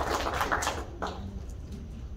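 Scattered audience clapping dying away within the first second, leaving a low steady hall hum.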